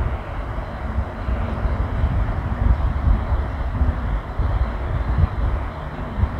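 A steady low rumbling background noise, with no clear pitch or rhythm, that rises and falls a little in loudness.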